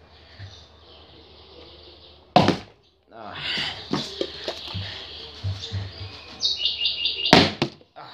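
Plastic water bottle tossed in a flip and landing with a sharp thunk, twice: once about two and a half seconds in and again near the end. The second landing does not stay up.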